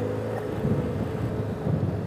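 BMW F800GS parallel-twin engine running steadily while the motorcycle rides along a dirt track, with rough tyre and road noise underneath.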